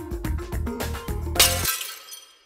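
Soundtrack music with a beat, then about one and a half seconds in a loud crash of breaking glass. The music cuts off suddenly and the glass rings and tinkles away.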